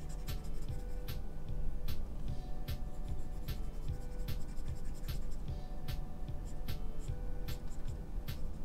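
Pen stylus tapping and stroking on a drawing tablet, irregular sharp clicks several times a second, over background music with a low, steady bass.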